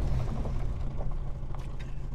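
A Mini's engine running low and steady, heard from inside the cabin as the car rolls along, with a few faint knocks and the level easing off slightly.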